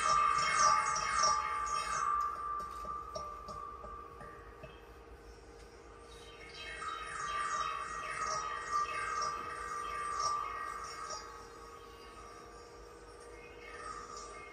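Pinuccio Sciola sound stone being played in two swells of ringing tone, each a few seconds long, building and fading around one steady pitch. A rapid scraping texture of many quick strokes runs over the ringing.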